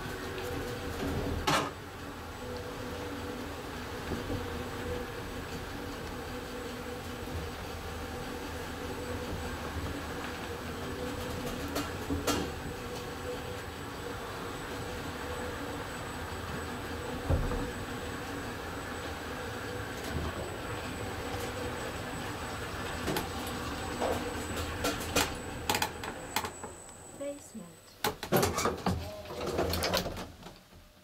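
Luth & Rosén traction elevator car travelling, heard from inside the car: a steady running hum with a thin high whine. Near the end it slows and stops, the whine cuts out, and a cluster of clicks and knocks follows as it lands at the floor.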